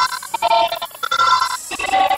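Electronically warped, high-pitched voice-like sounds in short pitched bursts, about four in two seconds, each jumping to a different pitch, with a musical, bleating quality.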